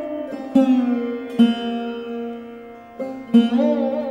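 Music: a plucked string instrument playing a slow melody, each struck note ringing on. Near the end, notes waver and slide in pitch.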